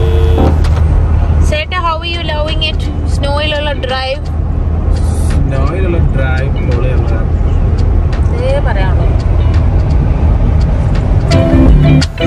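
Steady low rumble of road and engine noise inside a Toyota's cabin at highway speed, with a voice rising over it a couple of times.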